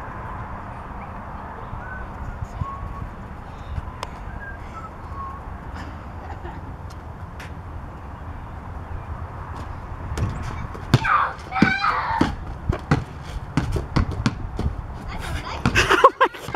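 A basketball bouncing on a concrete driveway: a string of sharp bounces in the second half, with brief shouted voices among them about eleven seconds in and near the end, over a steady low outdoor rumble.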